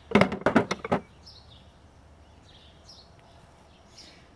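Wooden tool handles clacking against each other and the bucket, a quick run of sharp knocks within the first second. After that there are only faint bird chirps.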